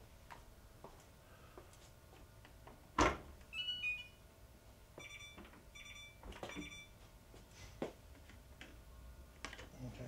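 Electrolux EFLS517SIW front-load washer door latch releasing with one sharp click. It is followed by electronic beeps from the control panel: a falling two-note chime, then three short beeps.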